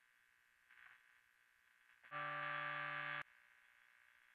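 A distorted electric guitar note played through a BOSS MS-3 switcher, starting about two seconds in, held at a steady level for about a second and cut off abruptly.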